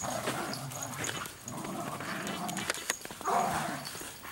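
Two Australian Labradoodles growling at each other as they play-fight, with a louder flurry of growls a little after three seconds in.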